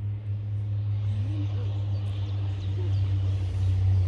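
A steady low rumble that grows slightly louder towards the end.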